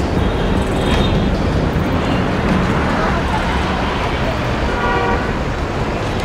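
Steady road traffic noise with a vehicle horn tooting briefly about five seconds in, and voices in the background.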